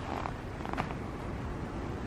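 Horse trotting on soft sand arena footing: a faint, steady low rumble with a few soft sounds in the first second.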